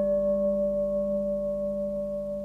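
A struck bell ringing out, several steady tones slowly fading.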